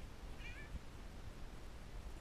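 A short, high-pitched call about half a second in. Under it are low, soft thuds and a rumble like footsteps climbing steps.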